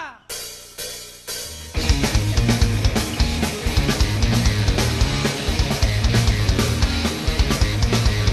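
Rock band playing live: three hits, each left to ring, in the first second and a half, then the full band comes in together about two seconds in. From there, drums with cymbals, bass and electric guitars play on steadily and loudly.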